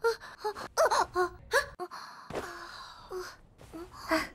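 A young anime girl's voice making short wordless vocal noises, several in quick succession with bending pitch, then a brief break about halfway before a few quieter ones.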